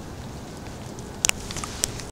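Camera handling noise: a few sharp clicks and knocks over faint outdoor background noise, the loudest a quick double click a little past halfway, then lighter ticks near the end.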